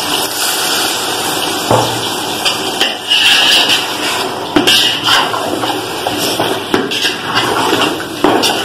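A steel spoon stirring wet chicken masala in an aluminium pot, scraping and knocking against the pot's sides at irregular moments over a steady hiss.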